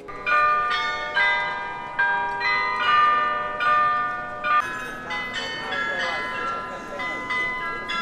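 The carillon of the Rathaus-Glockenspiel in Munich's New Town Hall tower playing a tune, about two struck bell notes a second, each ringing on under the next. A crowd's chatter is heard underneath in the second half.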